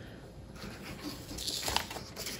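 Light rustling of a paper seed packet and a paper plate being handled, with a brief louder rustle about a second and a half in.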